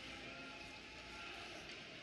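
Faint, steady ice hockey arena ambience: a low crowd murmur and rink noise with no distinct impacts.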